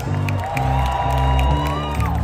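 Live country band vamping: a stepping bass line with drums, and one long held note that bends upward near the end, over some cheering from the crowd.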